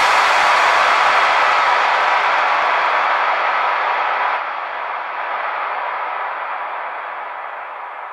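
A long, noisy sample played back from the Battery 4 drum sampler. It starts sharply just before this stretch and fades slowly, the highs dying first, with a small step down in level about four seconds in.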